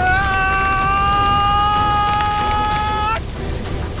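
A woman's long high-pitched battle cry, rising into a held note that stays steady for about three seconds and then cuts off abruptly.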